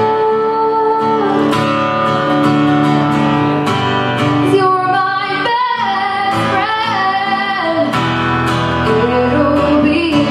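Female voice singing a slow melody with long held notes, accompanied by her own strummed acoustic guitar, performed live solo.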